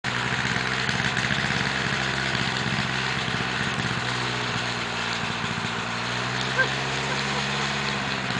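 Light single-seat autogyro's engine and propeller running steadily on the ground while its rotor spins up, a steady engine note with a fast rhythmic beat.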